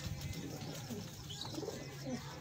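Domestic pigeons cooing in a loft, with soft low coos in the second half.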